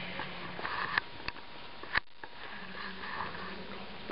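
Breathy sniffing close to the microphone over a steady low room hum, with a few sharp clicks; the loudest click comes about two seconds in.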